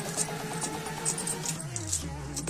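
Background instrumental music with a steady beat.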